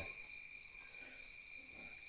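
Crickets chirring faintly and steadily.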